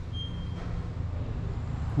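Street traffic heard through the open doorway of a building foyer, a steady low rumble. A short high tone sounds briefly near the start.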